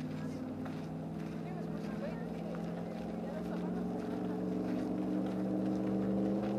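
A motor engine running steadily at low revs, a low hum that climbs slightly in pitch and grows a little louder in the second half, with faint voices in the background.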